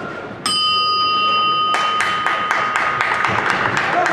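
Boxing ring bell struck once to end the round, ringing out and dying away over about a second and a half. It is followed by a quick run of sharp claps, about four or five a second.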